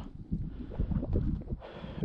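Irregular low rumbling of wind buffeting the microphone.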